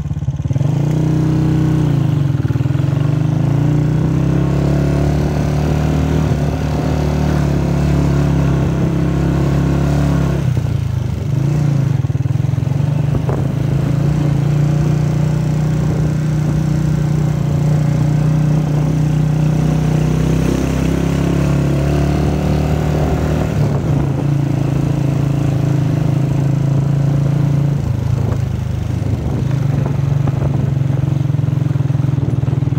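Motorcycle engine running steadily as the bike is ridden. Its note shifts near the start and drops briefly about ten seconds in before picking up again.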